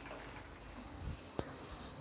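Faint workshop room tone with a thin, steady high-pitched whine, broken once by a single sharp click a little past halfway.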